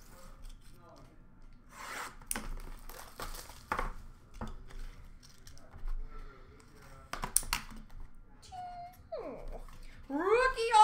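Trading cards, foil pack wrappers and plastic being handled on a glass counter: scattered rustles, taps and light clicks. A brief faint pitched sound with a falling glide comes about nine seconds in.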